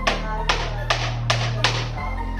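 A hammer driving nails into plywood, five sharp blows about 0.4 s apart, over electronic background music.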